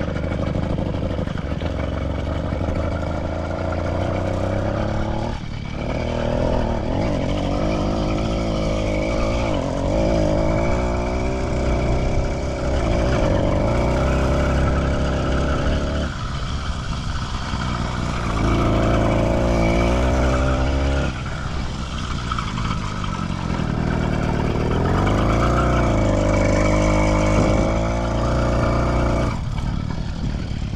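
Small petrol engine of a motorized bicycle running under way, its pitch rising and falling again and again as the throttle is opened and eased off, with a few short drops in revs.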